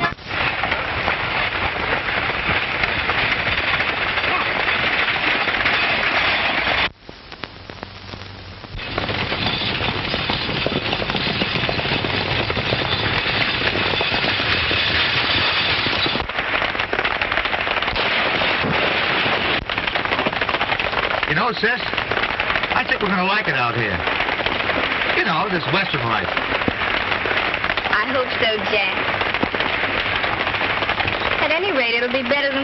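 Horse-drawn stagecoach on the move: a dense rattle of the team's rapid hoofbeats and the coach's wheels. It drops away briefly about seven seconds in, then carries on.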